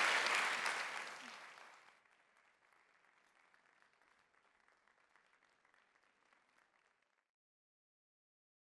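Audience applauding. It fades away over the first two seconds to a faint patter of claps, which stops dead about seven seconds in.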